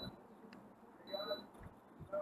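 Quiet room, with a brief, faint voice-like sound about a second in and a thin high-pitched tone that comes and goes.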